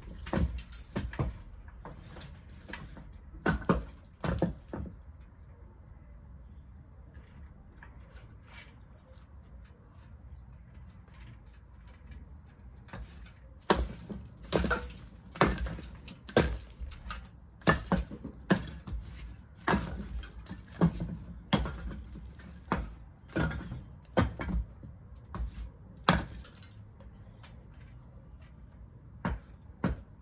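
Repeated sharp knocks and thuds of old bricks being worked loose from the top of a crumbling brick wall. There are a few near the start, a quiet stretch, then a steady run of blows, one or two a second, through the second half.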